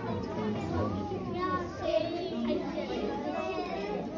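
Indistinct chatter of many voices at once, children's voices among them, with no single speaker standing out.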